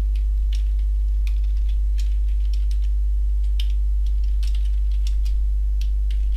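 Computer keyboard keys clicking in irregular, scattered strokes as someone types, over a steady low electrical hum.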